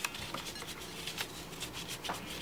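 A lint-free wipe soaked in alcohol is rubbed over a cured gel nail by gloved fingers, taking off the sticky layer. It makes a run of short, irregular scratchy rustles.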